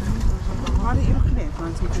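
People talking indistinctly at close range, over a low rumble of wind buffeting the microphone.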